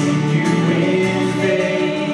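A woman singing a Christian worship song over strummed acoustic guitar, sustained and continuous.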